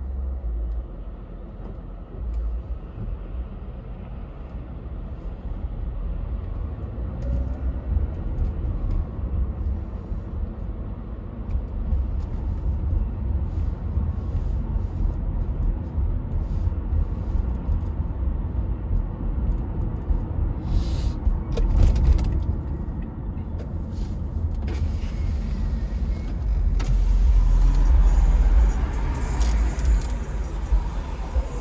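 A car driving in city traffic: a steady low rumble of engine and tyres on the road, heavier near the end, with a few scattered light clicks.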